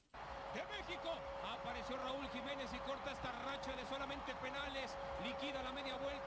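Football match TV broadcast playing quietly: a commentator talking without pause over the stadium's background noise, with a steady hum-like tone underneath.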